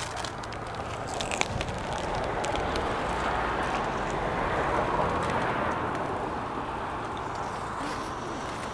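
Steady outdoor street noise that swells and fades around the middle, like traffic passing on the road. A few faint clicks come in the first second or two.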